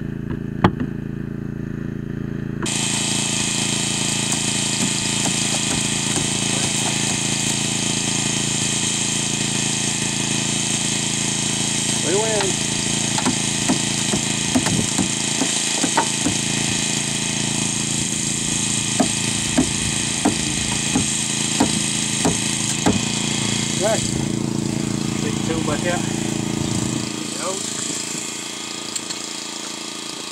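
Portable gasoline hydraulic power unit running steadily while it drives a hydraulic rescue ram rolling a car's dash. Its low engine sound falls away about three seconds before the end.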